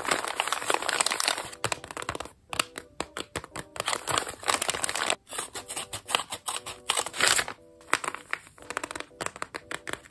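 Paper blind-bag envelope crinkling and rustling as it is handled and cut open with scissors, in irregular crackly bursts with brief pauses.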